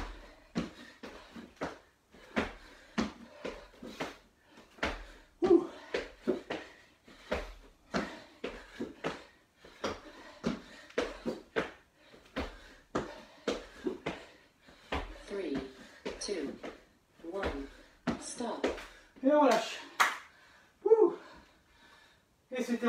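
Burpees on a plastic aerobic step: hands slapping down on the step and feet landing on the wooden floor, a few thuds a second, with short voiced breaths and grunts between them. The thuds stop near the end, leaving a few louder gasps.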